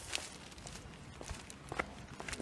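Footsteps on wet asphalt pavement: a few steps, the clearest near the end.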